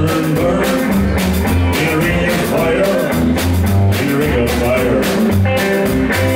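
Live country-rock band music: electric guitar over a bass line and drums keeping a steady beat.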